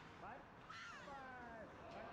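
Faint, drawn-out shouts from players or people at rinkside in an ice arena, with a brief rising call near the start and a longer call falling in pitch about a second in.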